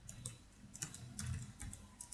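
Computer keyboard being typed on: a faint, uneven run of keystroke clicks as an email address is entered.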